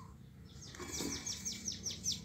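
A small bird singing faintly: a quick run of short, high notes that each drop in pitch, about six a second, starting about half a second in.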